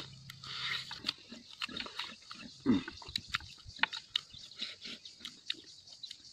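A person chewing and lip-smacking loudly with the mouth open while eating with his hands: quick wet smacks and clicks several times a second, with a short low throat sound near the middle.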